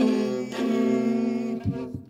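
String instruments, guitar with fiddle, playing the closing chord of a live country song. A last chord is struck about half a second in, there is a short thump near the end, and the sound then dies away.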